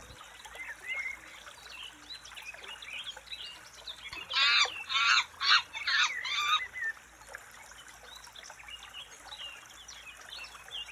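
Bird ambience: scattered small chirps throughout, with a quick run of about five loud honking calls in the middle.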